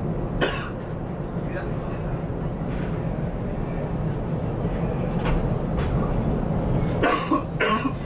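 Steady low hum inside the cab of a JR West 521 series electric train standing at a station platform. A few short sharp sounds, voice- or cough-like, break in over it, most of them near the end.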